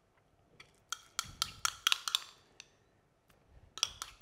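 Metal spoon clinking and scraping against a small ceramic bowl while scooping out a thick garlic marinade paste: a run of light, ringing clicks starting about a second in.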